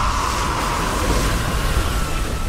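The deep, continuous rumble of a huge breaking wave, with a long, high scream over it that cuts off near the end.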